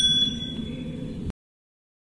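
Bicycle bell ringing out, its clear high tones fading away over about a second above a low background rumble; the sound cuts off abruptly to silence a little over a second in.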